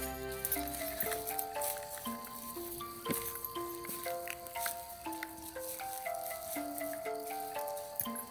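Background music: a simple melody of single held notes stepping up and down, about two to three notes a second.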